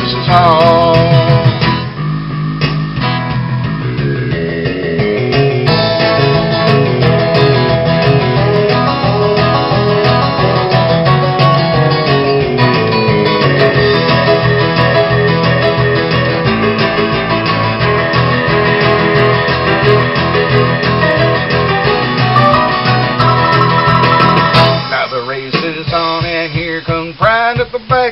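Instrumental break in a country song: strummed acoustic guitar over a fuller backing. A sung line ends about two seconds in, and singing starts again near the end.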